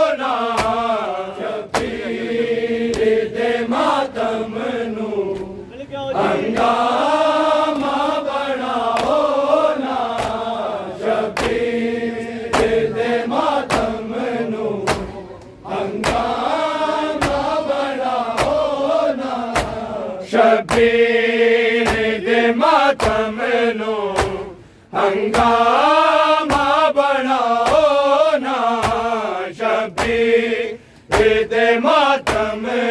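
Men chanting a Punjabi noha (Shia lament) in unison, with the crowd's rhythmic matam chest-beating slaps, about one to two a second. The chanting breaks off briefly twice, between lines.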